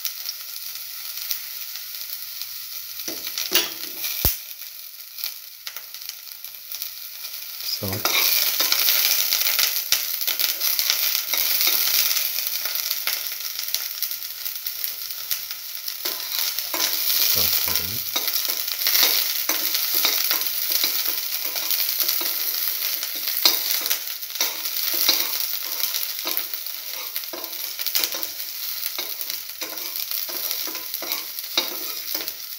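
Chopped shallots sizzling in hot oil in a pan, with frequent short clicks and scrapes of stirring. The sizzle grows louder about eight seconds in.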